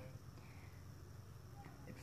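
Near silence: room tone with a faint low hum, and a few faint small handling sounds near the end as a plastic electrical connector is pushed onto a three-wire coolant temperature sensor.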